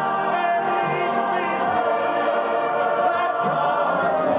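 Southern gospel male quartet singing live in close harmony into microphones, several voices holding long sustained notes.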